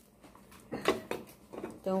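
Saucepan lid knocking against a pan on the stove: a few brief knocks, the loudest about a second in.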